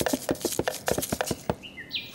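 Quick, even light tapping, about six taps a second, like a small drum rhythm beaten on a hard surface, with a short high toot near the end.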